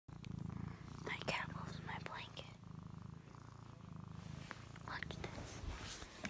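A domestic cat purring right at the microphone, a steady low pulsing rumble that fades out near the end.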